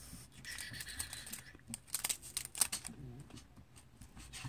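Small cosmetics packaging being handled and opened by hand: a run of light clicks and crinkles, with a short scraping rub in the first second and a half.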